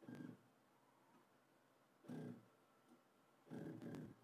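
Anet A6 3D printer's Z-axis stepper motors running in short jog moves: three brief, faint buzzes, near the start, about two seconds in and near the end. The left side of the Z axis is not working properly.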